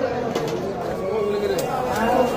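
People talking in the background, with two brief sharp clicks about half a second and a second and a half in.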